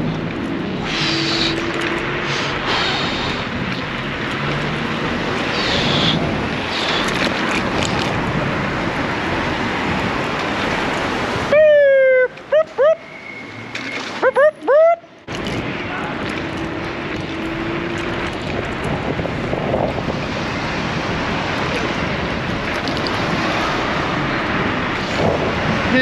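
Steady wind rush on the microphone and road noise while riding a Varla Eagle One Pro electric scooter at speed. It breaks off for a few seconds a little before halfway, where a voice is heard against a quiet background, then resumes.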